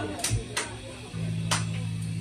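A band's stage gear just before a song: a few sharp ticks and a low thump, then a steady low hum that starts just over a second in.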